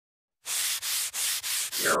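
Rhythmic scratchy rubbing noise: four even strokes about a third of a second apart, then a louder swell of noise near the end.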